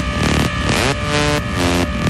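Electronic music track: a synth sound sweeping upward in pitch about once a second over a steady pulsing beat.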